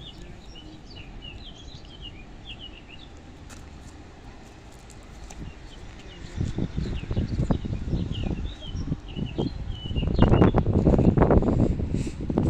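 Small birds chirping over a low background rumble. About halfway through, a low, irregular rumble swells and grows louder as a double-deck electric push-pull passenger train approaches the station.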